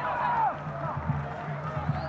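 Stadium ambience from a football-match broadcast: a steady low hum with a distant drawn-out shout in the first half-second and fainter calls after it.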